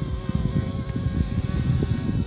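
Yuxiang F06 EC135 RC helicopter's rotor head and motors buzzing in flight, a steady high whine at a super high head speed, with a rough rumble of wind on the microphone underneath.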